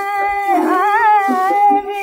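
Male ghazal singer on an early 78 rpm gramophone record, holding one long sung note in Raga Bhairavi, with a wavering ornament about a second in, over a steady accompanying tone.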